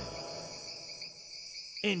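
Crickets chirring in a steady, unbroken chorus of high-pitched tones, as a background nature ambience.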